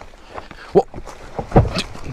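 A box wrapped in a black plastic bag is jostled about, then falls onto the rocks with a heavy thump about one and a half seconds in.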